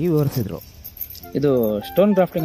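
A person speaking, with a short pause a little after the start before the talk resumes.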